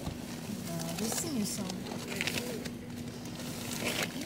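Quiet voices talking softly in the background over a steady low hum inside a van cabin.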